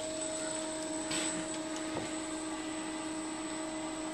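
Aristo-Craft E8 large-scale model diesel locomotives running in reverse under power, a steady electric motor and gear whir with several constant pitches. A faint click about two seconds in.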